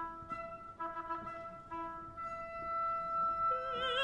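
Opera orchestra playing a quiet passage of held notes and short repeated chords. A singer's voice with wide vibrato comes in near the end.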